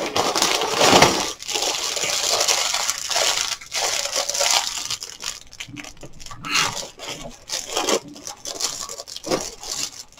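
Clear plastic bag of LEGO pieces crinkling as it is handled, dense at first and loudest about a second in, then in shorter separate bursts.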